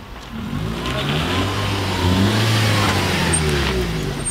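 Small hatchback car driving up and passing close by. Its engine note rises in pitch and then falls away as it goes past.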